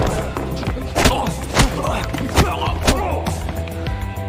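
Fight-scene sound effects: about five sharp punch and body-impact hits in quick succession over a steady music score.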